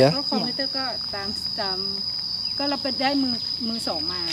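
A steady, high-pitched insect drone holding one unbroken tone, under people talking.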